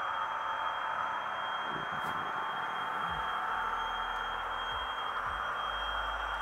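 Steady diesel engine sound from a Hornby HST model's HM7000 sound decoder, played through the model's small onboard speaker as the train runs, with a thin steady high tone over it. A low rumble comes in about halfway through.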